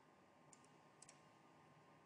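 Near silence, with a few faint clicks: one about half a second in and two close together about a second in.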